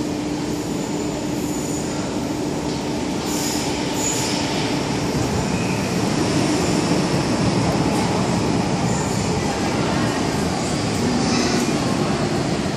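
MTR Kwun Tong line M-Train (Metro-Cammell electric multiple unit) running into an underground station platform and braking to a stop, a steady rumble building a few seconds in, with brief high squeals about four seconds in and again near the end.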